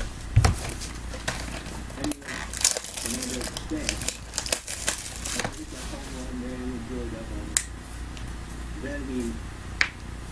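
Cardboard card boxes and foil packs being handled and stacked on a table: crinkling, rustling and light knocks, with a dull thump about half a second in as a box is set down. The handling dies down after about five seconds, leaving a faint voice talking in the background and a couple of sharp clicks.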